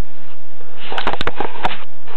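A quick cluster of small clicks and taps about halfway through, with a little breathy noise, from hard plastic toy figures being handled and set down on a wooden tabletop.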